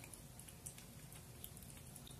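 Near silence: room tone, with two faint soft clicks, one about two-thirds of a second in and one about a second and a half in.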